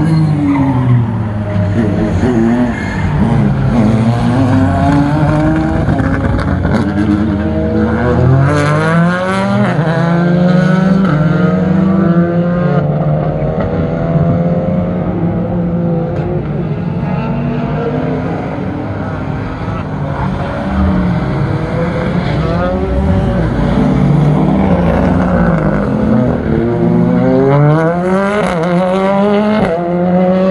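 Several racing cars' engines revving hard on a circuit, often two or more at once. Their pitch repeatedly climbs and drops as the cars accelerate out of the corners and brake into them.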